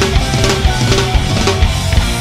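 Live hard-rock band playing: an electric guitar line of held notes, some bent, over a busy drum kit and bass.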